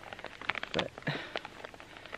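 A paper topographic map rustling and crinkling as it is handled and refolded, in short irregular crackles.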